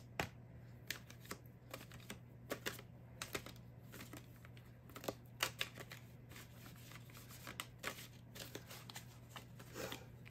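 Tarot cards being shuffled and handled by hand: faint, irregular clicks and rustles of card stock.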